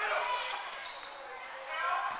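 Players' voices calling out to each other on the court, with a brief high squeak about a second in.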